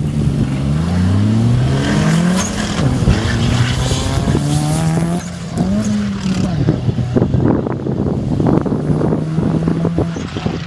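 Two cars launching from a standing start in a drag race, engines revving hard up through the gears: the pitch climbs, drops at each shift and climbs again over the first several seconds, then holds steadier as they pull away down the strip.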